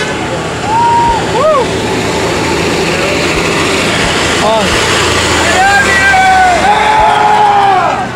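Passing road traffic, with people shouting and whooping over it several times: short calls about a second in and again midway, then a long drawn-out whoop near the end.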